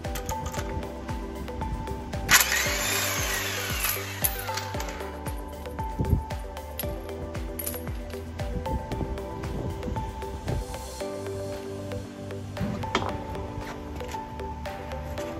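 Background music plays throughout. About two seconds in, an electric impact wrench runs in one loud burst of roughly two seconds, spinning a lug nut off a car's front wheel, followed by a few light knocks as the wheel is worked loose.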